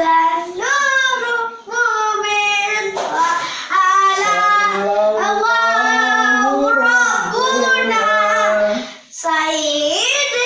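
Young children singing a sholawat together without accompaniment, an Islamic devotional song praising the Prophet. They sing in phrases with short breaks between them, and the sound is reverberant from the small tiled room.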